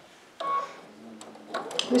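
A single short electronic beep from the computerized sewing machine, starting suddenly about half a second in.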